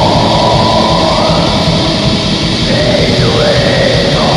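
Black metal: a dense wall of distorted guitars and fast drumming, with a melody line that bends up and down over it.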